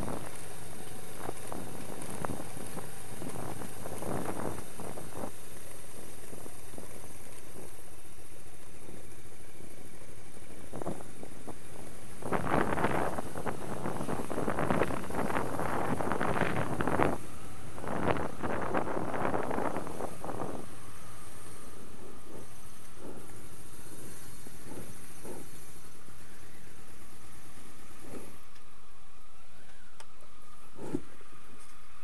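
Motorcycle ridden slowly over cobblestones, heard from a helmet-mounted camera: the engine running under a steady rush of wind noise, with a louder, rougher stretch in the middle as it passes through an arched gateway. The wind noise fades near the end as the bike comes to a stop.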